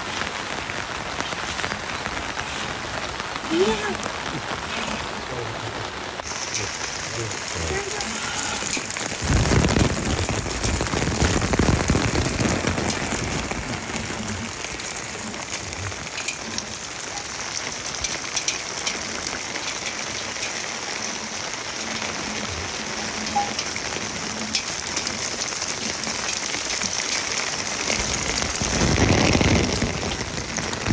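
Steady rain falling, a continuous hiss that grows brighter about six seconds in, with low rumbling swells around ten seconds in and again near the end.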